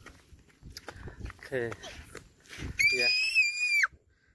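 A young child's high-pitched squeal, held for about a second near the end and cut off sharply, after a few quiet spoken words.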